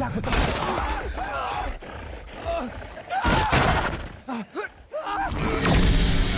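Horror film soundtrack: a man's shouted dialogue mixed with bursts of loud crashing, chaotic noise.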